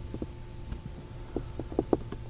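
Steady low hum with a few irregular soft knocks and clicks, several of them close together near the end.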